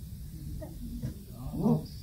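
A dog gives one short bark about one and a half seconds in, over quiet voices in the room.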